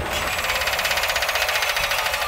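Sound-design effect in an animated title sequence: a fast, evenly pulsing mechanical rattle or buzz with little bass, holding steady.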